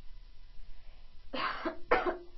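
A woman coughing twice in quick succession, a short cough about a second and a quarter in and a sharper one right at the end.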